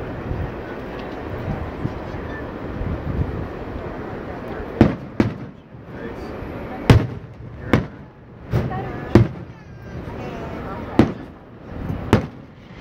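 Aerial firework shells bursting overhead: after a few seconds of steady background noise, a series of about eight sharp bangs begins roughly five seconds in, coming at uneven intervals.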